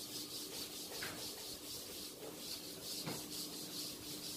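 A board duster being rubbed across a chalkboard in repeated strokes, wiping off chalk writing; a faint, scratchy rubbing.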